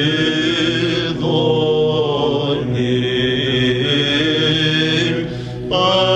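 Byzantine chant: a male chanter sings an ornamented melody over a steady low drone (ison) held beneath it. Near the end the melody breaks off briefly for a breath while the drone holds, then resumes.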